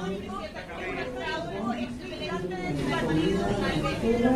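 Speech: voices talking over one another, growing louder near the end.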